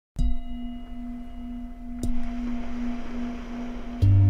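Opening music: a bell-like tone struck twice, about two seconds apart, ringing on steadily between the strikes with fainter high overtones.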